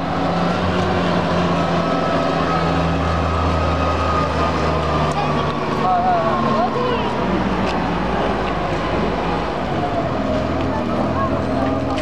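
Diesel engine of an empty container handler running steadily, heavier in the first few seconds, with a thin whine that slowly drops in pitch.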